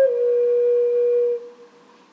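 Slow flute music: a single held note that steps down slightly, then fades away about a second and a half in, leaving a brief pause.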